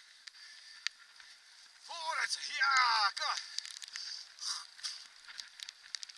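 Bicycle rolling fast over a dirt forest track, with steady tyre hiss and scattered small clicks and rattles. About two seconds in come a few short wordless voice calls with falling pitch, the loudest sounds here.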